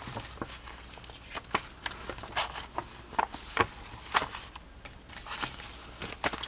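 Paper being handled: pages of a junk journal turned and loose sheets of paper and card moved, giving irregular short taps, flicks and rustles.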